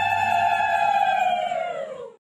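A single long held note with a strong, clear pitch that bends downward and fades out near the end.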